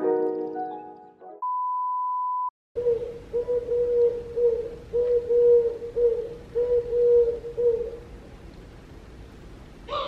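Background music cuts out, followed by a single steady electronic beep lasting about a second. After a brief dropout comes a quieter outdoor background in which a mid-pitched tone pulses about seven times, roughly once every 0.7 seconds, then stops, leaving only the background.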